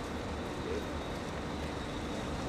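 Car engine running with a steady low rumble as the vehicle rolls slowly forward.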